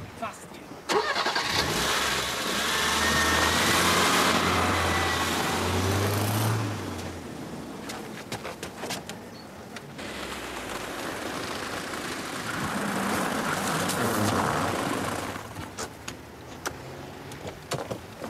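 A Mercedes-Benz 190 saloon's engine starts about a second in, runs, and revs as the car pulls away. Later the car is heard driving along a snow-covered road, with a few short knocks near the end.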